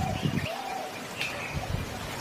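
Birds calling: a low arching note about half a second in and a few short, higher chirps, the loudest about a second in.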